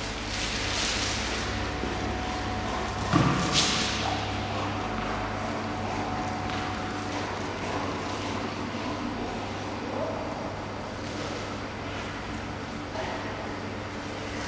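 A dog moving about on a concrete floor, its paws padding and scuffling, over a steady low hum. A sharp, short sound stands out about three seconds in.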